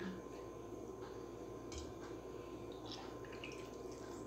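Water squeezed out of a soaked lentil fritter, pressed between the palms, dripping back into a steel bowl of water. Faint, with a few soft drips and squelches.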